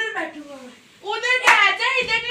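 Excited children's voices laughing and squealing in rough play, with one sharp smack of hands about one and a half seconds in.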